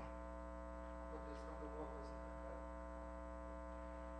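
Steady electrical mains hum with many evenly spaced overtones, picked up by the recording system.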